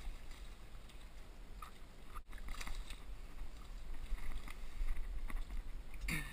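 Water splashing as a hooked barramundi thrashes and jumps at the surface, over a steady low rumble of wind on the microphone.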